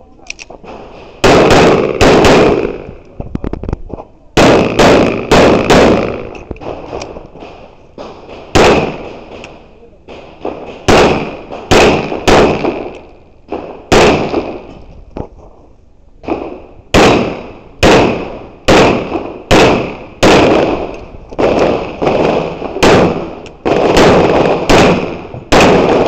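Pistol shots fired in quick pairs and short strings, about thirty in all, with pauses of one to three seconds between groups. Each shot is a sharp crack with a brief ringing tail.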